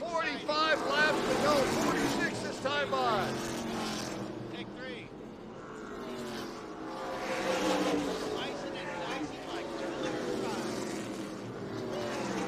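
A pack of NASCAR K&N Pro Series V8 stock cars racing together, several engine notes overlapping and rising and falling in pitch as the cars go through the turns.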